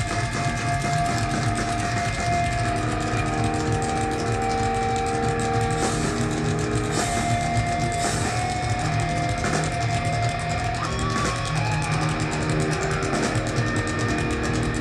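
Heavy metal band playing live through a loud PA: distorted electric guitars hold long sustained notes over bass and drums.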